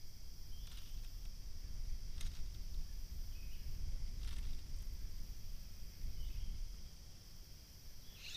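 Steady high-pitched insect drone over a low rumble on the microphone, with a few faint ticks.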